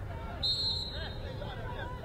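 Referee's whistle: one short, shrill blast signalling the kick-off, over faint players' calls and open-air ambience at a football pitch.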